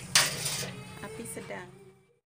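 A coil wire whisk stirring and scraping around a stainless steel pot of thin liquid, loudest just after the start and fading away toward the end.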